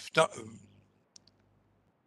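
A brief voiced sound from a man in the first half-second, falling in pitch, then two faint short clicks a little after a second in.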